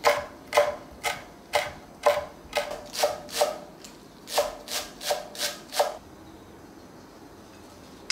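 Knife chopping on a cutting board: a run of sharp strokes, about two to three a second, with a short pause midway, stopping about six seconds in.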